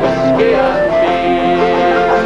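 Irish folk group performing live: men singing at the microphones over strummed guitar and banjo.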